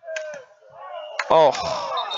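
Open-field lacrosse game sound: a sharp crack about a second in as a player takes a hard hit and goes down, followed at once by a man's loud 'oh'.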